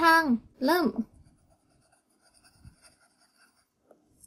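Pencil scribbling back and forth in every direction to shade in an answer bubble on a paper answer sheet: a faint, quick, irregular scratching that lasts about three seconds.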